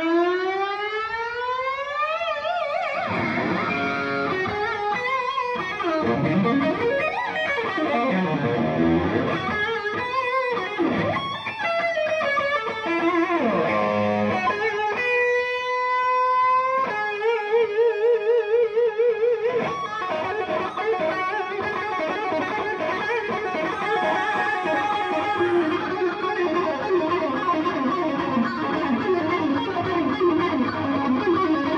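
Unaccompanied electric guitar solo at a rock concert. It opens with a long rising pitch slide, moves through swooping runs, holds a steady note about halfway through, then a wavering vibrato note, and ends with fast runs of notes.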